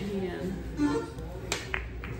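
Pool balls clicking together: one sharp click about one and a half seconds in, as the cue ball strikes a cluster of balls on the table.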